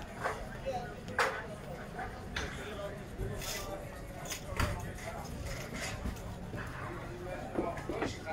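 Outdoor ambience with irregular clacks and knocks, the sharpest a little after one second and again near the middle, over faint indistinct voices.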